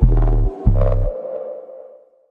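Short electronic music sting for a TV programme's logo transition: two deep bass hits in the first second, then a ringing tone that fades away.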